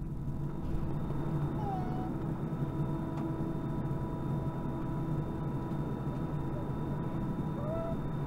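Steady cabin noise of an Airbus A320 taxiing: a low engine hum with a few steady whining tones. Two brief, faint sliding voice-like sounds come about two seconds in and near the end.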